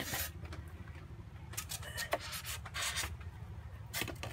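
Marker pen tracing along the edge of a carved foam block on a foam board: a series of short, scratchy rubbing strokes, a few of them close together in the second half.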